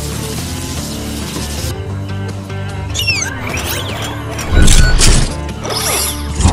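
Background music with edited-in sound effects: a quick falling whistle-like glide about three seconds in, then a loud crash-like hit with a deep boom lasting about half a second, about four and a half seconds in.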